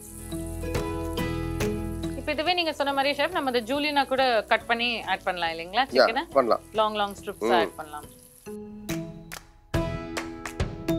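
Marinated chicken sizzling in hot oil in a frying pan as it is added from a bowl, under a person's voice and background music. The sizzle stops about eight and a half seconds in, where the music carries on alone.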